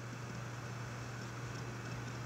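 A low, steady hum with a faint hiss beneath it: background noise of the recording, with no other sound.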